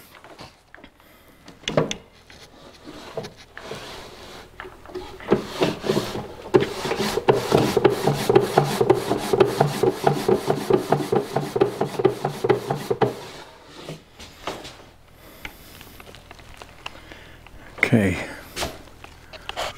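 A wooden drawer pushed and pulled in its cabinet opening, its sides rubbing on the carcase with a rapid juddering squeak for about nine seconds in the middle: the fit is still tight. A single knock comes about two seconds in.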